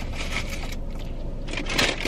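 Rustling and crinkling of fast-food paper packaging being handled, with small clicks and scrapes and a louder rustle near the end.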